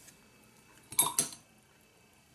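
Two quick clinks about a second in, a paintbrush knocking against a hard container among the painting gear.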